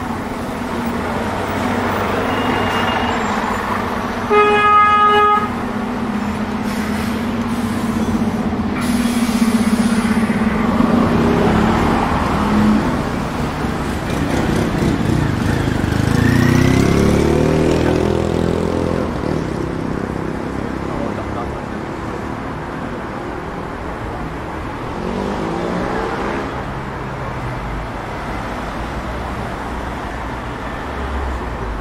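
Busy city road traffic, with buses and cars passing close by. A short vehicle horn toot sounds about four to five seconds in and is the loudest moment. A vehicle engine pulls away, rising in pitch, around the middle.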